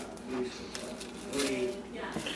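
Plastic cling film crinkling and rustling as hands roll it tightly around a wrapped beef tenderloin, with a faint murmured voice twice.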